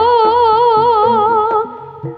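Javanese jaranan song: a high voice holds one long, wavering sung note over a bass line and light drum strokes, and the note fades out about a second and a half in, leaving the accompaniment.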